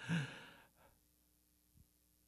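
A man sighing: one breathy exhale with a little voice in it, fading out within about a second, followed by near silence.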